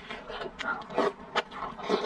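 Close-miked eating sounds: a woman sniffling while eating spicy noodles in chili sauce, then slurping and sucking them in, with wet mouth clicks coming in short irregular bursts.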